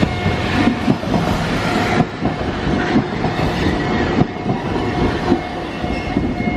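Purple Keifuku Randen tram-style electric train passing close by at a level crossing, its wheels knocking and clacking over the rail joints. A steady ringing from the crossing's warning bell runs alongside.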